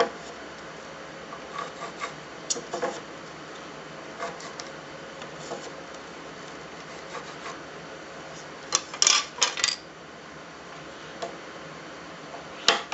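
Pencil drawing lines across the end grain of a square cherry blank along the edge of a plastic centre-finder, with light taps of the plastic square and scattered small scratches, then a quick run of four louder scratchy strokes about nine seconds in.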